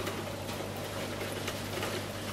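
Aquarium equipment running: a steady low hum with a soft, even hiss of moving water.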